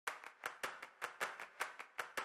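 A quick, even series of sharp claps or clicks, about five a second, each fading fast.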